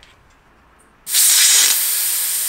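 Air hissing out of the valve of a bicycle's Schwalbe Marathon tyre as it is let down: a loud, steady hiss that starts suddenly about a second in.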